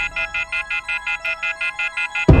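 Rapid electronic beeping, about five beeps a second, from a telephone whose handset hangs off the hook by its cord: an off-hook tone. Under it is a low film-score drone that fades away.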